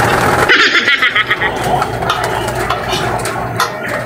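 Pigeons crowding at a plastic feeder and water dish: a rustling flurry of wings about half a second in, then scattered pecking clicks and shuffling.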